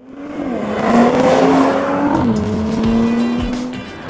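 A car's tyres squealing over a rushing engine and road noise, starting suddenly and building over the first second, with a steady high squeal that holds and shifts pitch slightly a couple of times.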